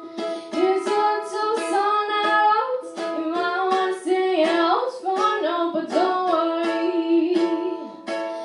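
A girl singing a pop song live while strumming a ukulele in an even rhythm. Her voice carries the melody over the chords.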